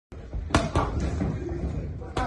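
Boxing gloves hitting focus mitts: two sharp smacks in quick succession about half a second in, with lighter hits after them.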